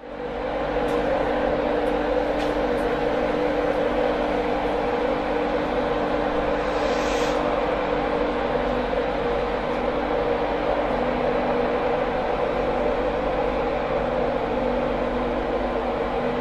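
Class 91 electric locomotive running close by: a loud, steady electrical and fan hum with a few held tones. A brief hiss comes about seven seconds in.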